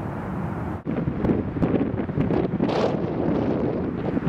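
Wind buffeting the microphone: a loud, gusty low rumble that briefly drops out about a second in and then resumes.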